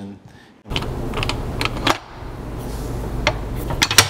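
Shop machinery sounds: a steady low motor hum with scattered metallic clicks and clatter, starting just under a second in after a short quiet gap.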